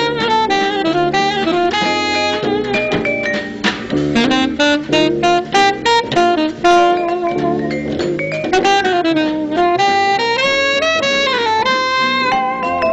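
A small jazz combo playing, with an alto saxophone leading a running melodic line full of bends and slides, over guitar, vibraphone, bass and drums.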